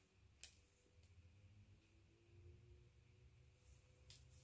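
Near silence: low room tone, with one faint click about half a second in.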